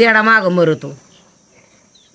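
Steady, high-pitched insect chirring in the background. A woman's drawn-out voice lies over it for the first second, and after that the chirring is heard alone.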